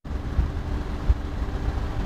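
Outdoor background noise: a steady low rumble with a faint hum, the kind of sound distant traffic makes.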